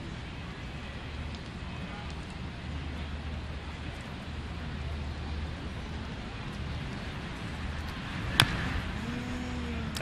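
Steady murmur of a ballpark crowd, with one sharp crack about eight seconds in as the pitch reaches the plate.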